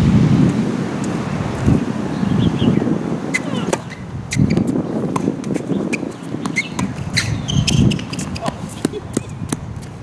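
Wind buffeting the microphone with an uneven low rumble, broken by scattered sharp ticks and knocks from tennis play.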